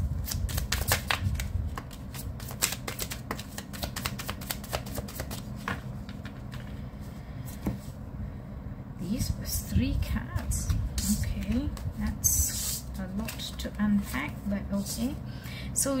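A tarot deck being shuffled by hand: a quick run of card flicks and riffles over the first six seconds or so. After that a low voice murmurs quietly.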